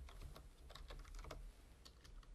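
Faint computer keyboard typing: a quick run of keystrokes over about a second and a half as a short word is entered, then a single click near the end.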